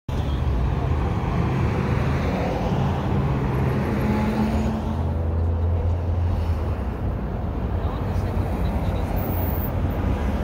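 Roadside traffic noise: cars running on a busy road, with a steady low engine rumble.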